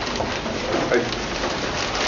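Steady hiss of background noise, with a man briefly saying "I" about a second in.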